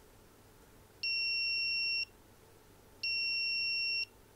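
BerryClip add-on board's buzzer beeping twice on a Raspberry Pi: two steady, high-pitched one-second beeps about two seconds apart.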